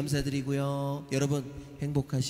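A man's voice speaking into a microphone, with drawn-out syllables.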